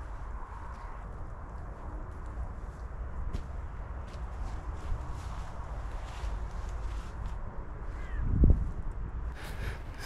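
Footsteps of a walker crossing grass and leaf litter, heard as faint scattered crunches over a steady low rumble. A single louder thump comes about eight and a half seconds in.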